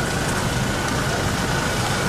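Steady outdoor background of vehicles in a parking lot: a low even engine rumble and noise with a thin constant high tone running through it.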